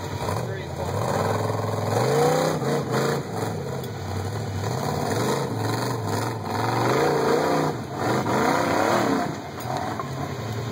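Rock buggy's engine revving hard in repeated bursts as it claws up a rocky slope, its pitch swooping up and down with each blip of the throttle.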